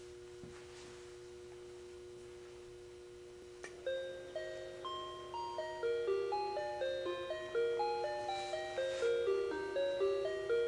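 A children's musical clown wall clock plays one of its built-in electronic melodies, a tune of bell-like chime notes at about two or three notes a second. The tune starts just after a click a few seconds in, following a steady hum.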